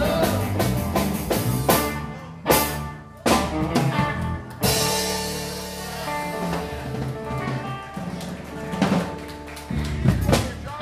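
Live rock-and-roll trio of electric guitar, bass guitar and drum kit playing the close of a song. Two seconds of full-band playing give way to a few loud band hits with cymbal crashes. After about four and a half seconds a chord is left ringing and slowly fades while the drums strike now and then, and a last loud hit comes near the end.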